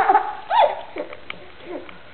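A dog whining: one rising-and-falling whine about half a second in, then two shorter, falling whines.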